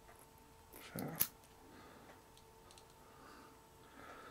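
A metal pocket clip is being worked onto a small aluminium keychain flashlight. There is one sharp click about a second in, and faint handling noise for the rest.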